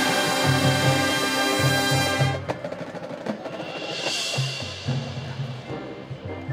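High school marching band playing: a loud held brass chord over a steady pulse of low drums cuts off about two seconds in, leaving quieter percussion.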